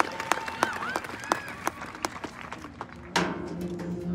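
Scattered audience clapping with a few whoops, thinning out. About three seconds in, a marching band comes in with a sudden attack and holds a low, sustained chord.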